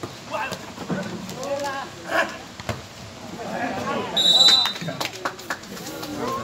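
Shouting voices during a volleyball rally, with a few sharp knocks of the ball being struck, and a short, loud referee's whistle about four seconds in that ends the point.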